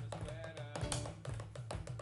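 Band playing an up-tempo rock groove: fast, steady drum hits over a low bass line, with keyboard.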